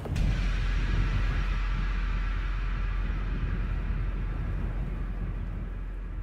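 Wind buffeting a handheld camera's microphone on a moving open chairlift: a steady low rumble with hiss that eases a little toward the end, after a short click at the start.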